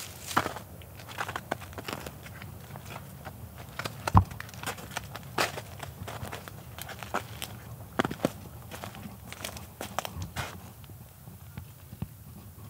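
Footsteps crunching through dry leaf litter and twigs on a forest floor, irregular steps with a louder thump about four seconds in.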